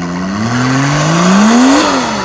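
Off-road competition vehicle's engine revving: its pitch climbs steadily for over a second, peaks near the end, then drops back.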